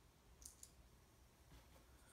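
Near silence, with two faint quick clicks about half a second in from a small servo and screwdriver being handled.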